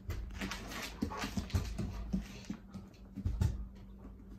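Great Pyrenees dog sounds with a run of short clicks and scuffs as she moves about on a tile floor.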